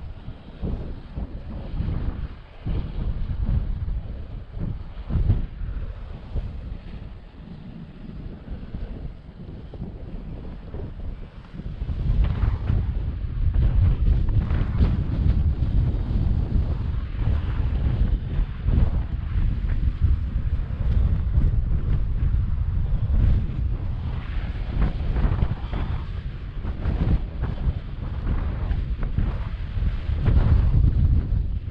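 Wind buffeting the microphone in gusts, a heavy rumble that grows stronger about twelve seconds in.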